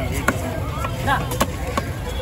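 Heavy fish-cutting knife chopping through a large seabass on a wooden block: three sharp chops, the loudest a moment in and two more in the second half, with voices in the background.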